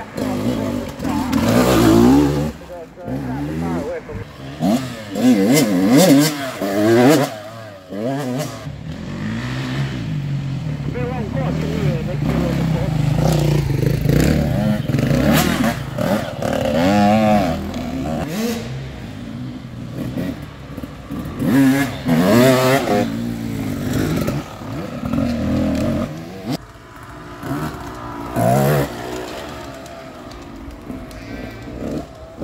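Enduro dirt bikes ride past one after another on a muddy woodland track. Their engines rev up and down as the riders work the throttle, with the loudest passes about two, six, sixteen and twenty-two seconds in.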